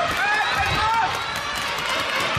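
Several high voices calling out across a large sports hall, overlapping, with the thud of players' footsteps on the court beneath them.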